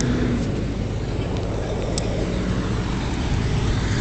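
Steady low rumble of a running vehicle engine, with a faint steady hum in it, and one sharp click about two seconds in.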